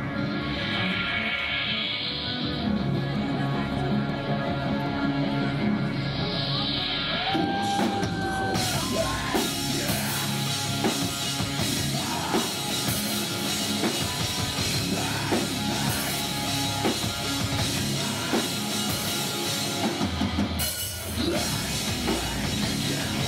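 Heavy metal band playing live through club amplification: distorted electric guitars and bass open the song, and the drum kit with crashing cymbals comes in about eight seconds in. The full band plays on, with a brief break shortly before the end.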